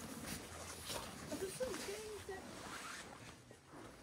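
Rustling of winter clothing and faint voices in the background. A short stretch of soft talk comes near the middle, and it grows quieter toward the end.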